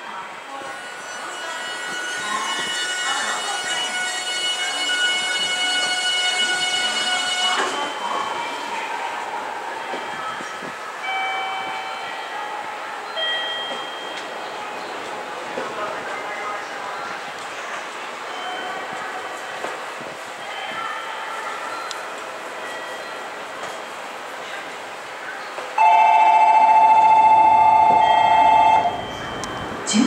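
Station departure bell at the platform rings with an electronic tone for about eight seconds and stops abruptly, signalling the train's imminent departure. Platform ambience follows, then near the end a loud steady tone sounds for about three seconds.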